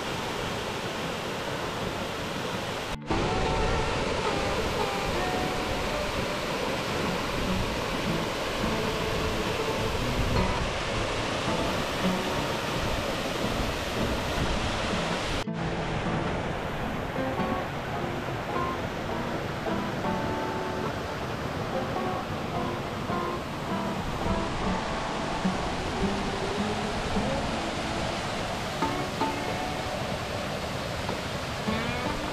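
Instrumental background music with short picked notes over the steady rush of a tall waterfall. The rushing gets louder at a cut about three seconds in.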